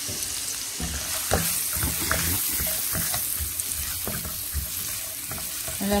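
Diced onion sizzling in hot oil in a frying pan, with a plastic spoon stirring and knocking through it from about a second in.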